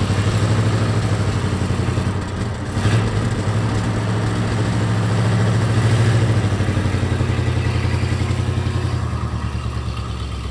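The 1940 Cadillac's flathead V8 running and pulling as the car drives off under its own power, a sign that the clutch stuck to the flywheel has broken free. A single clunk comes about three seconds in, and the engine note swells about six seconds in before easing off.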